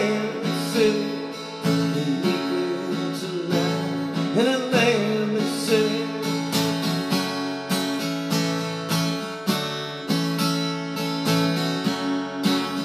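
Acoustic guitar strummed steadily in a live solo performance.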